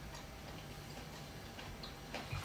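Faint chewing: soft, irregular mouth clicks while eating with the mouth closed.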